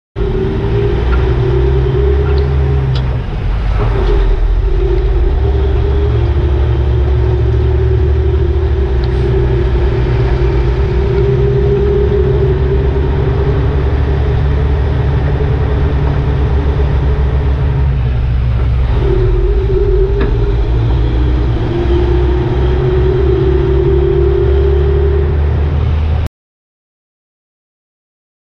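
Heavy-duty tow truck driving down the road while towing a log truck on its underlift: a steady low rumble of engine and tyres on the road, with a droning tone that drifts slightly up and down in pitch.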